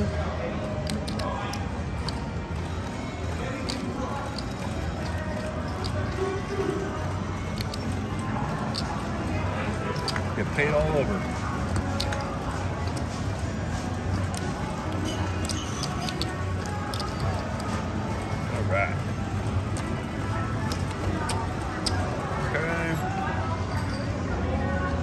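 Casino table ambience: background music and indistinct chatter, with scattered light clicks and taps of playing cards being turned over and gathered on the felt.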